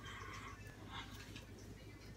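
Faint whispering, breathy and without voiced tone, over a low steady room hum.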